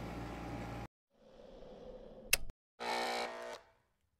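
Short channel-logo sound effect after a cut from room tone: a faint rising hiss, a sharp swish about two seconds in, then a brief buzzy tone under a second long.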